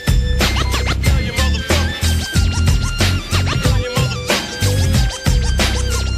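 G-funk hip hop instrumental section: turntable scratching over heavy bass and drums, with a high synth lead holding notes that step up and down in pitch.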